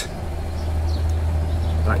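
Steady low engine hum from road traffic, growing slightly louder over the two seconds.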